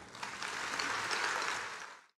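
Audience applauding, starting a moment in and fading away before cutting off near the end.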